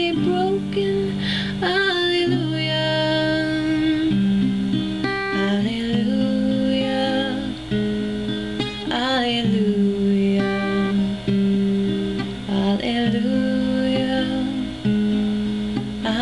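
Acoustic guitar playing slow chords that change every couple of seconds, with a woman singing long held notes over it.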